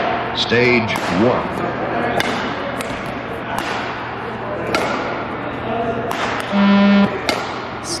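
Running footsteps thudding on a sports-hall court floor with a sneaker squeak, as a runner does a beep-test shuttle. Near the end comes one steady electronic beep, about half a second long, from the 20 m shuttle-run recording, signalling the end of the shuttle.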